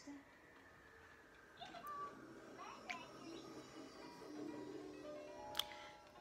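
Faint speech and music in the background, like a television programme playing, with a sharp click near the end.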